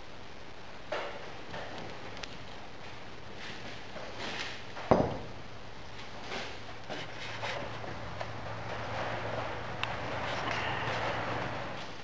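Steady rain on the roof, with small knocks as a metal moulding flask is handled and a single thump about five seconds in as its top half is lifted off and set down.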